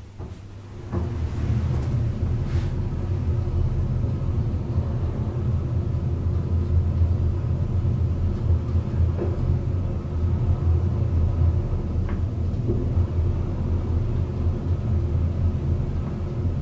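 1971 traction elevator, modernised by Amsler, travelling upward, heard from inside the cab. It gives a steady low rumble that starts about a second in as the car sets off, with a few faint clicks along the way.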